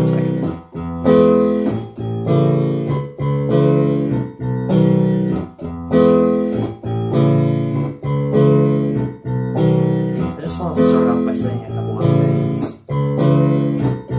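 Piano chords played on a keyboard in a steady repeating progression, one chord struck about every second and left to ring.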